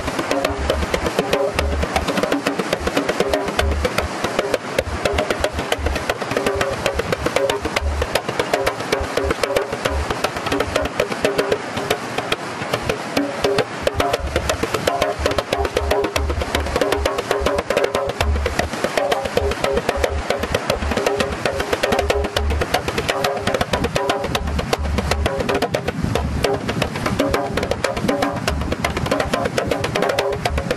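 Hand drum played in a fast, continuous rhythm: sharp slaps over deep bass thumps that come in short runs.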